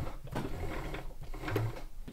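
Sailrite lockstitch sewing machine worked briefly to bring the bobbin thread up through the needle plate, with light irregular mechanical clicks and thread handling.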